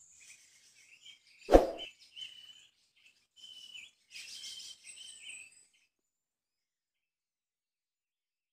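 One loud thump about one and a half seconds in, followed by faint, short bird chirps for a few seconds that stop abruptly.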